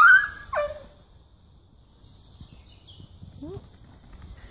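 A dog's high-pitched yelp right at the start, then a second short yelp sliding sharply down in pitch about half a second in. After that only a faint, short rising whine is heard, a little past the three-second mark.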